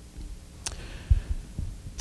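A short pause in a man's speech, with quiet room tone. A faint click comes a little under a second in, and a couple of soft, low thuds follow just past the middle.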